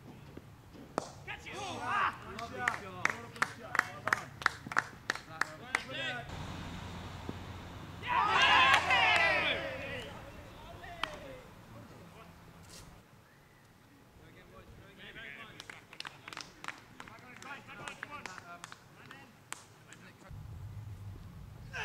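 A few people clapping steadily, about three claps a second, with shouts over the first claps as a batsman is bowled. About eight seconds in, several voices break into loud, excited shouting, and near the end there is more scattered clapping with voices.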